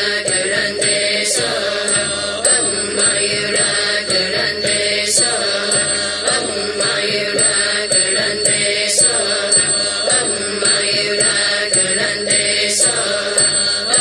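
Voices chanting a Buddhist mantra in a steady, repeating melodic line, with a short bright strike recurring about every four seconds.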